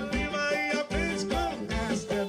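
Live band music with a steady drum beat under pitched melody lines, played loud.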